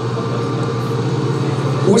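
Hydraulic excavator's diesel engine running at a steady, even pitch.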